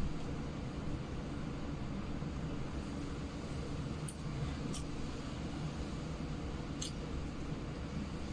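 Steady low room hum, with a few faint sharp clicks in the middle from a person eating by hand off a plate.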